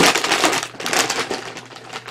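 Crinkling and crackling of a Lay's potato chip bag, a metallised plastic-film snack bag, handled in both hands. It is loudest in the first second and thins out toward the end.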